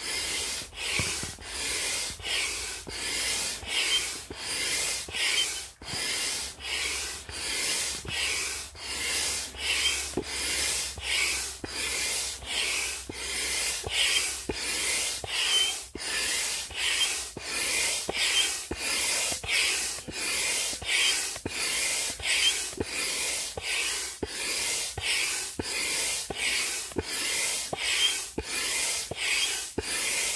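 Large INTEX 68615 hand pump pumping air through a hose into an inflatable turtle pontoon. It goes in a steady rhythm of strokes, a little more than one a second, each a hissing rush of air.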